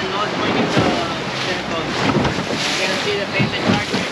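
Wind buffeting the microphone and sea water splashing against the hull of a small open boat running through choppy water, with faint voices in the background.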